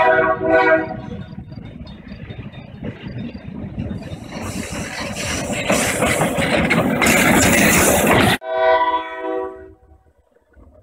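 Diesel locomotive horn sounding a steady chord from an EMD GP9, ending about a second in. The locomotive's engine and wheels then rumble past, growing louder until the sound cuts off suddenly. A second, shorter horn blast follows near the end.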